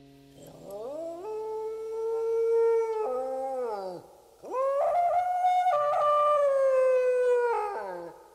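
Two long wolf-like howls, each gliding up in pitch, holding, then falling away; the second, about four and a half seconds in, is higher and louder. A faint low hum sits under the first second and a half.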